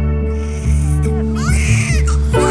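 Newborn baby crying in short bursts, loudest near the end, over steady background music.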